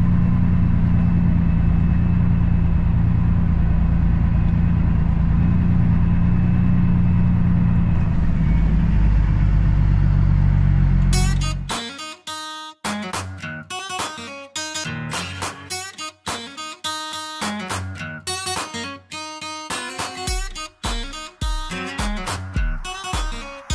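Kenworth W900L semi truck's diesel engine running steadily at low speed, heard from inside the cab. About halfway through it cuts off abruptly and guitar-led background music takes over.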